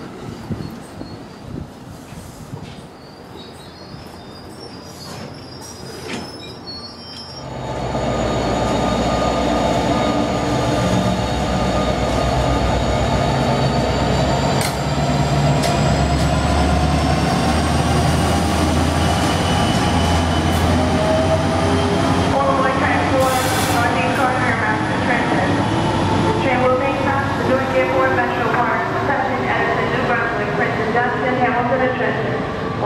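Amtrak train running close by and picking up speed, with a whine that rises slowly in pitch over heavy rolling rumble. It becomes loud suddenly about seven seconds in, and rail crackle and squeal join it in the last several seconds. Before that there is quieter rumble and clicking from an NJ Transit multilevel train moving along the platform.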